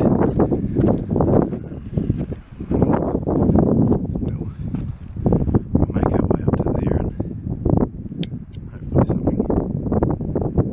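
Muffled, indistinct talking close to the microphone, with a single sharp click about eight seconds in.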